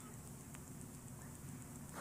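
A quiet pause in a recorded speech: the steady faint hiss and low hum of a cassette tape recording, with one tiny click about half a second in.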